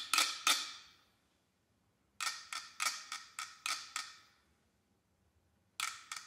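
Struck percussion played with sticks: sharp, briefly ringing strokes in quick clusters of five or six. A pause of about a second separates the clusters, one dying away about a second in, the next from about two to four seconds, and another starting near the end.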